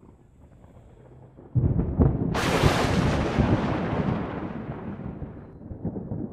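A thunder-crash sound effect: a sudden deep rumble about a second and a half in, then a sharp crash with a hiss at the top that dies away slowly over about three seconds.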